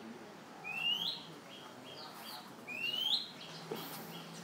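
A bird calling: twice a rising whistled note, each followed by a run of short, quick repeated notes.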